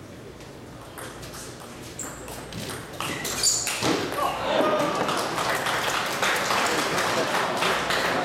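Table tennis rally: the ball clicks sharply off the paddles and table about twice a second, then about three seconds in a crowd of spectators starts shouting and cheering loudly until the end.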